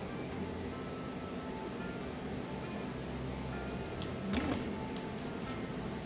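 Steady low background hum, with one brief louder sound about four seconds in.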